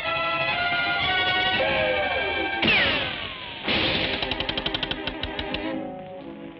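Cartoon music score with sustained tones, broken about two and a half seconds in by a sudden loud falling whistle, then a fast rattle of clicks that slows down.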